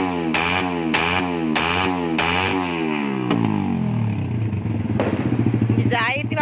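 Suzuki Raider 150 carburettor engine revved in quick throttle blips, each rising and falling in pitch, with a sharp crack from the exhaust at the top of most blips, the popping of an exhaust tuned to shoot flames. About halfway through the revs fall away and it settles to a steady idle.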